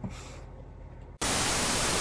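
Faint room tone, then about a second in a sudden loud hiss of TV-style static: a glitch transition sound effect.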